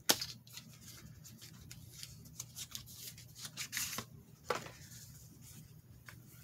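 Cosmetic packaging being handled and opened by hand: a sharp click at the very start, then scattered short crinkles and crackles. A low steady hum runs underneath.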